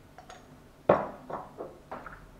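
A metal spoon knocking against a small glass spice jar: one sharp clink about a second in, then three lighter taps.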